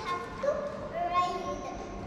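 A high-pitched voice, likely a child's, making drawn-out wordless sounds that slide up and down in pitch.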